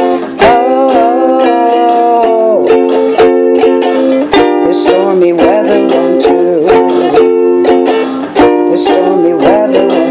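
Ukulele strummed in a steady rhythm, with a voice holding long, wavering wordless notes over it.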